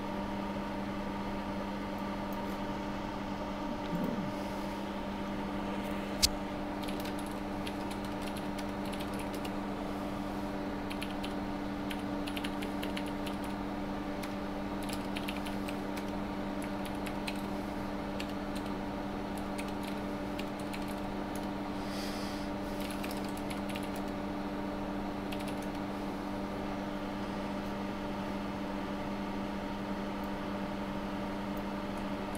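Computer keyboard typing: scattered keystroke clicks, with one sharper click about six seconds in, over a steady electrical hum from a running bench fume extractor.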